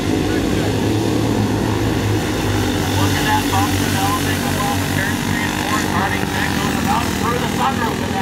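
Junior sportsman racing karts' small engines running together at racing speed, a steady drone.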